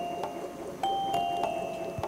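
Slow, gentle background music of sustained bell-like notes, with two new notes sounding about a second in.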